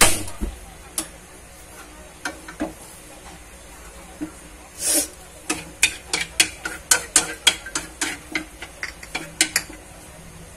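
Wooden chopsticks clicking and scraping against a nonstick frying pan as pork pieces and garlic are stirred, over a steady faint sizzle. The clicks are sparse at first, then come quickly, about three or four a second, in the second half.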